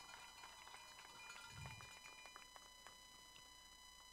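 Near silence: a faint steady hum with a few faint clicks.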